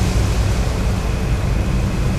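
Steady low rumble of a tugboat's engine under way, with the wash of sea water.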